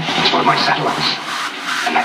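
A new electronic dance remix playing back from a computer music project: a loud, busy, rhythmic passage.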